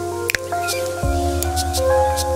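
Instrumental hip-hop beat played live on a Roland SP-404 sampler: sustained sampled chords over crisp hi-hat-like ticks. About a second in the chords change and a deep kick drum hits, its pitch dropping.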